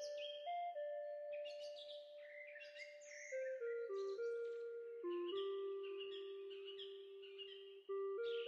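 Instrumental background music: a simple melody stepping through a few notes and then holding long ones, with high chirps like birdsong mixed in.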